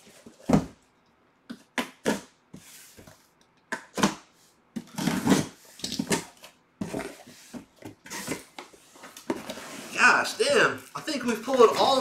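Cardboard box and packaging being handled and opened: a string of short rustles and knocks, with a laugh near the end.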